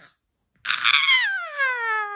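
A malamute giving one long whine that starts about half a second in and slides steadily down in pitch until it fades out at the end.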